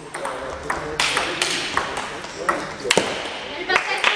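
Table tennis ball hit back and forth in a rally: a run of sharp clicks of the celluloid ball on the paddles and table at an irregular pace.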